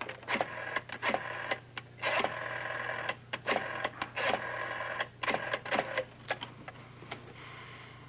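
A telephone being handled and dialed: a run of sharp, irregular clicks and clacks, with short spells of tinny ringing in between, over a steady low hum.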